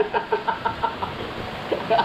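A man laughing heartily: a quick run of short 'ha' pulses, about six to seven a second, through the first second, with more laughter near the end.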